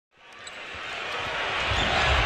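Basketball game sounds from a packed arena, fading in from silence: the hum of the crowd with low thuds of play on the court underneath.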